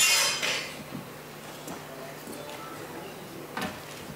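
A brief clinking clatter fills the first half-second, then the hall goes hushed apart from one short knock near the end.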